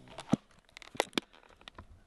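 A plastic fly box being handled and shut, with a string of sharp light clicks and short rustles.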